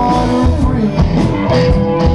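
Live Southern rock and blues band playing: an electric guitar and a bass guitar over a drum kit, with steady drum hits.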